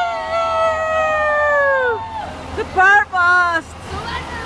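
Women's voices whooping: two high shouts held together for about two seconds, then falling away. A shorter, wavering whoop follows about three seconds in, over low street rumble.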